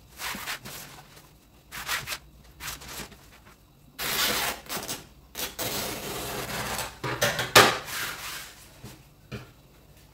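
Taffeta fabric rustling as it is handled and folded. From about four seconds in, scissors cut across it for about three seconds. A few short rustles follow near the end.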